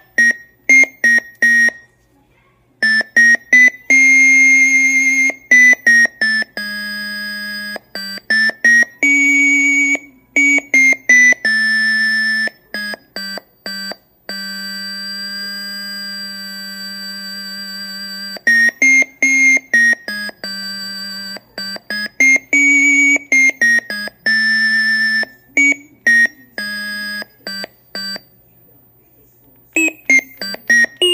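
Teenage Engineering OP-1 synth notes triggered by presses on a Poke pressure sensor, with the pitch set by tilting a Flip accelerometer. A run of mostly short notes starts and cuts off abruptly, with a few held for a few seconds, and the pitch steps up and down from note to note.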